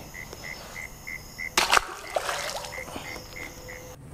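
A bass splashing once as it is dropped back into ditch water, about a second and a half in. Under it an insect chirps in a steady rhythm, about three chirps a second.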